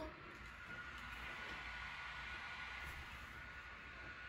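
Small DGLK bladeless neck fan running on the second of its three speeds: a faint, steady rush of air with a thin high motor whine.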